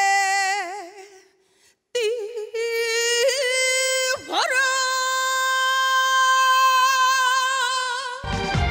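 A woman singing alone, without accompaniment, in long held notes. A note with wide vibrato fades out about a second in; after a short pause a new phrase steps up, swoops down and back up near the middle, and settles into a long steady held note.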